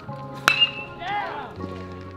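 Metal baseball bat striking a pitched ball: one sharp ping about half a second in, with a brief high ring after it.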